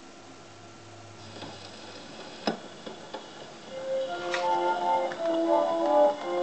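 A 78 rpm shellac record starting to play on an acoustic Victor Orthophonic Credenza phonograph as its reproducer is set down: faint surface hiss and a sharp click, then the record's instrumental introduction begins about four seconds in and grows louder.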